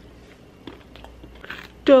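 Biting into and chewing a chocolate-covered pretzel, with a few faint crunches in the second half.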